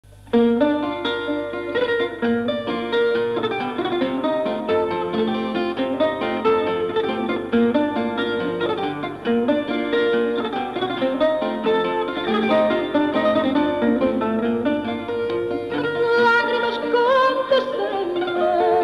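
Instrumental introduction to a fado: Portuguese guitar playing a running plucked melody over classical-guitar (viola) accompaniment.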